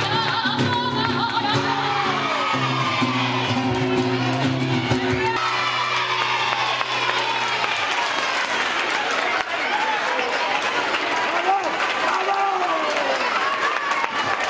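Live sevillanas flamenco: a woman singing over guitar chords and rhythmic handclaps (palmas). The guitar stops about five seconds in, and clapping and voices carry on.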